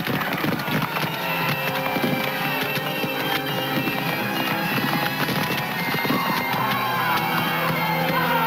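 Background music with sustained tones, laid over battle noise of scattered musket shots cracking throughout.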